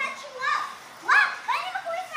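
A child's high-pitched voice in short excited calls, three in a row, during a toy car race.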